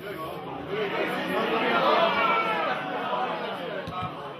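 Several voices at a football match calling out at once, swelling to a loud shout about two seconds in, then easing off.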